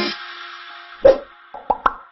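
An outro jingle's music dying away, then a loud cartoon 'plop' sound effect about a second in, followed by two quick clicks close together near the end.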